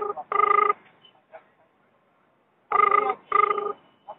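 Telephone ringback tone heard on a recorded call: double rings, two short steady-pitched pulses a moment apart, heard at the start and again about three seconds in, while the call waits to be answered.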